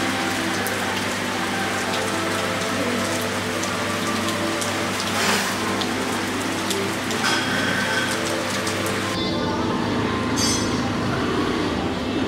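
Steady rain falling on wet pavement, with background music of sustained, slowly changing notes beneath it. The rain hiss thins out about nine seconds in, leaving mostly the music.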